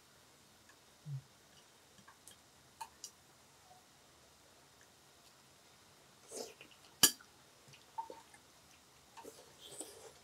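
Sparse light clicks and taps of metal tongs and chopsticks against the grill pan and dishes, with one sharper click about seven seconds in.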